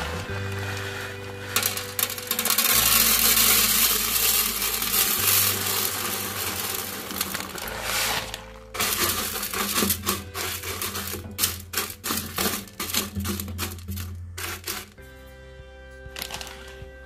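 Zeolite granules poured from a bag into a clear plastic tub: a dense rattling of small stones hitting plastic for about seven seconds, starting a second or two in. It then gives way to a stretch of separate clicks and taps as the last pieces drop and settle. Background music plays underneath.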